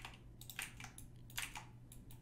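Computer keyboard keys tapped faintly, several separate clicks spread over two seconds.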